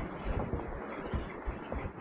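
Soft low thuds of footsteps walking along a paved towpath, over light wind noise on the microphone.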